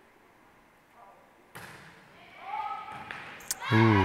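A volleyball served with a sharp hand-on-ball slap about a second and a half in, echoing in the gym. Near the end there is a second, lighter hit as voices break out shouting.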